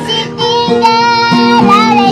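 A young girl singing a held, wavering melody over instrumental accompaniment.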